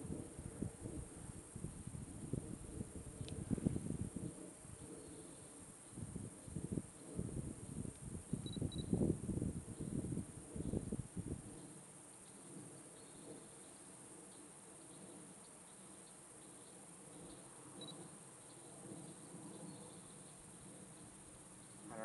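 Wind buffets the microphone in low, irregular gusts for the first half. A faint steady drone from a plane passing overhead runs underneath and stands alone in the quieter second half, with a few faint insect chirps.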